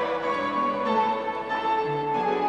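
Piano music with ringing, held notes in a slow melody, the kind played to accompany a ballet class.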